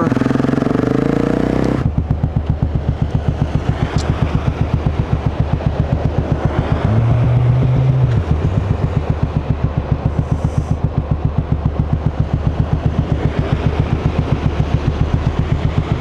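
Single-cylinder engine of a 2008 BMW G650 Xchallenge motorcycle idling with an even, rapid pulse, after a rush of riding noise dies away about two seconds in. A brief low steady hum sounds about seven seconds in.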